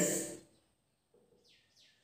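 Faint bird chirping: three quick falling chirps close together near the end, after a man's voice trails off at the start.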